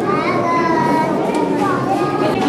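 Children's voices chattering in a room, one high child's voice rising and falling above the rest.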